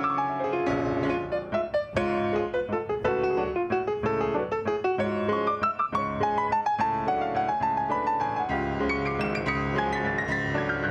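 Steinway concert grand piano played solo in a classical recital: a busy passage of many quick notes, with a melody stepping downward through the middle range over the second half.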